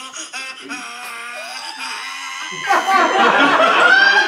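A man making odd, drawn-out vocal noises with his mouth. About three seconds in, loud laughter breaks out over them.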